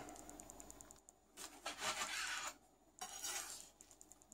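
A knife cutting through a frittata and scraping on a cutting board, in three strokes with the middle one the longest.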